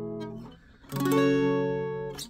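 Acoustic guitar, capoed at the seventh fret, strummed one chord at a time and left to ring. The previous chord fades and stops about half a second in, and a new chord is strummed about a second in and rings on, slowly fading.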